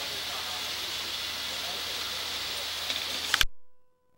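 Steady hiss over a low hum of jobsite background noise, with a few sharp clicks near the end. The sound then cuts off abruptly and almost entirely, leaving only faint steady tones.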